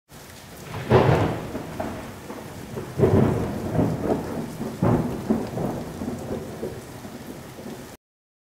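Rain and thunder: three peals about two seconds apart over steady rain, each rolling off slowly.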